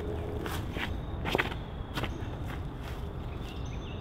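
Footsteps of a disc golfer's run-up and throw on a concrete tee pad: about five sharp footfalls over the first two and a half seconds, the loudest about a second and a half in.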